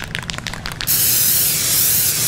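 Aerosol spray paint can shaken, its mixing ball rattling in quick strokes for about a second, then sprayed in one long, steady hiss.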